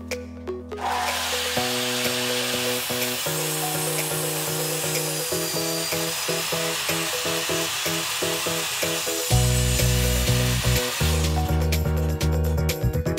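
Miter saw running and its blade cutting through a Japanese ash (tamo) board. The cut starts about a second in and stops about a second before the end, over background music.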